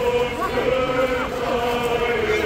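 A procession of Orthodox clergy chanting a hymn together, holding one long note, with crowd voices beneath.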